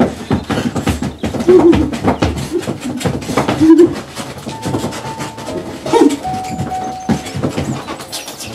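Rubber boots stomping a fast, rhythmic beat on a floor during a hoedown-style dance, with a few short vocal whoops between the stomps.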